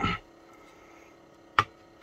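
A small metal-cased portable recorder is knocked down onto a wooden table: a sharp knock about a second and a half in, then a louder one right at the end.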